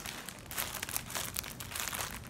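Clear plastic bag wrapped around a pair of shorts crinkling as it is handled: a run of irregular small crackles.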